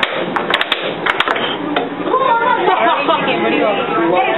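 Air hockey puck and mallets clacking sharply several times in quick succession, then voices chattering over the game.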